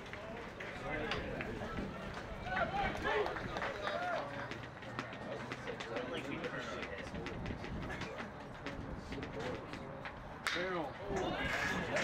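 Low voices chattering at a baseball game. About ten and a half seconds in, a baseball bat cracks sharply against the ball, and the voices rise after it.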